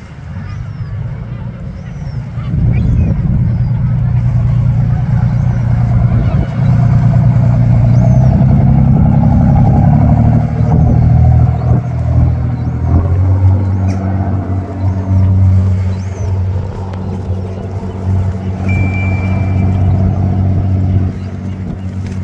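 Passenger speedboat engine running loud, climbing sharply as the boat pulls away under power, sweeping in pitch as it speeds up and then settling to a steady high-speed note as it heads out.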